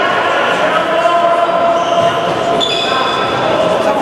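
Indoor futsal play: the ball bouncing and being kicked on the hall floor, with players' shouts, all echoing in the large sports hall.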